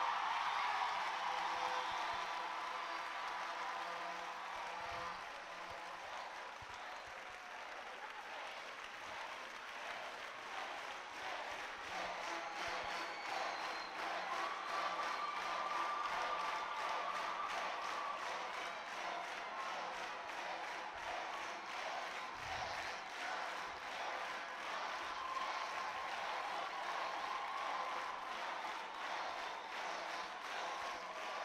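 Large congregation applauding, many hands clapping at once in a dense patter. It eases a little a few seconds in and swells again about midway.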